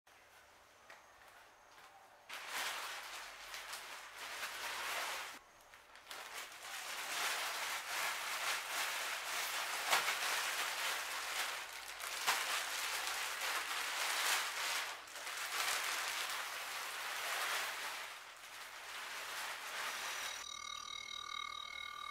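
Clear plastic wrapping on a new scooter crinkling and rustling as it is handled, in irregular stretches with a brief pause early on. Near the end a steady pitched tone with overtones starts.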